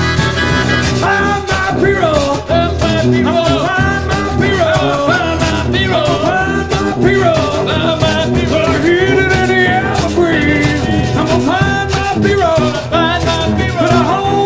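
Live band playing an up-tempo Americana song with a steady beat; a wavering melody line comes in about a second in.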